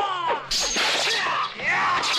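Kung fu film fight sound effect: a sharp whip-like swish starting about half a second in and lasting about a second, among bending pitched sounds from the soundtrack.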